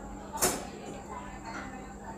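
Water poured into a glass of ice, with a sharp splash about half a second in and then a faint fizzing as the liquid froths over the ice.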